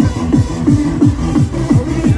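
Loud electronic dance music from a DJ's sound system, driven by a fast, pounding kick drum whose low notes slide down in pitch on every beat.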